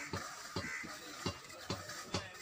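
Knife strokes slicing a cow's hide away from the carcass during skinning: a series of short, sharp cuts, about five in two seconds.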